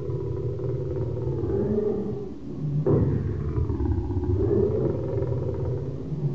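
Two long, wavering cries with a falling-and-rising pitch over a steady low rumble. The second starts suddenly about three seconds in and is the louder.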